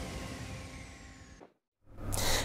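The tail of a TV news intro theme fading out, its sustained notes dying away under a high falling sweep, then cutting to silence about one and a half seconds in.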